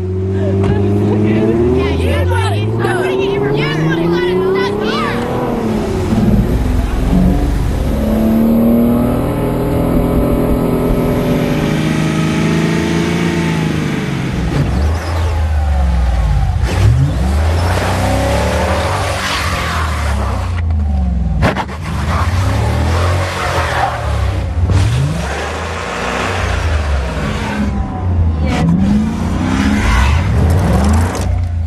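Car engines revving again and again, pitch rising and falling, as stuck cars try to drive out: first a Ford Mustang convertible bogged in sand, then a Dodge Challenger stuck in snow.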